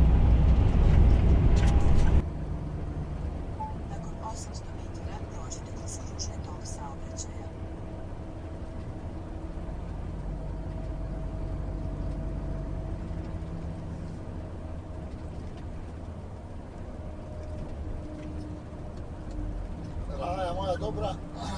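Volvo truck cab interior while driving: a steady engine drone and road noise. About two seconds in the level drops suddenly, and a quieter, even hum with a few faint steady tones carries on.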